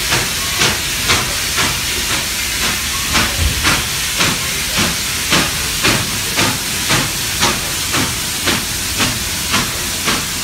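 Norfolk & Western 611, a 4-8-4 steam locomotive, working slowly with its exhaust beating evenly about twice a second over a steady hiss of steam.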